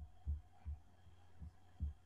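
Faint, irregular low thuds, about four in two seconds, over a faint steady hum.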